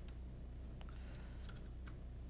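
A few faint, sharp clicks of small retaining clips being turned by hand against the edge of a 3D printer's glass bed, over a steady low hum.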